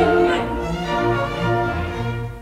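Opera orchestra playing, bowed strings to the fore: held chords over a bass line that moves in steps.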